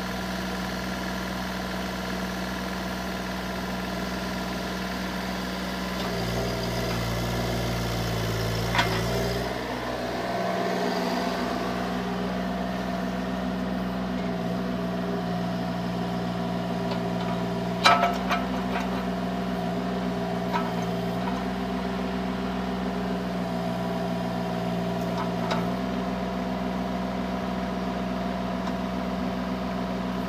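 Kubota diesel engine of a Bobcat E32 mini excavator running steadily while the machine swings its upper structure and works its boom and arm. The engine note shifts between about six and ten seconds in, and a few sharp knocks come through, the loudest about eighteen seconds in.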